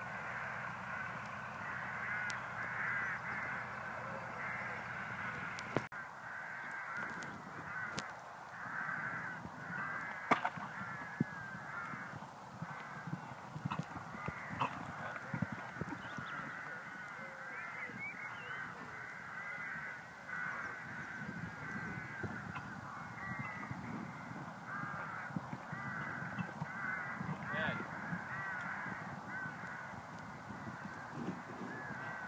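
A steady background chorus of bird calls, many overlapping calls at once. Under it are dull thuds of a horse's hooves on the sand arena, and a few sharp knocks.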